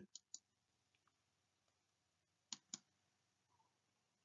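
Near silence with a few faint, short clicks: two just after the start and a quick pair about two and a half seconds in.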